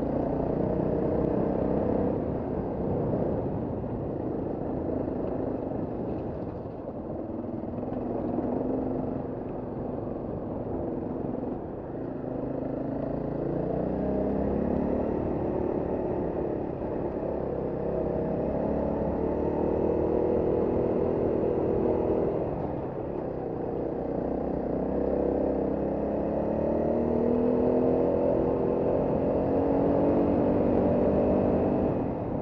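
Trail motorcycle's engine running as it is ridden along a stone track, the revs rising and falling with the throttle. The engine note climbs twice, about halfway through and again near the end.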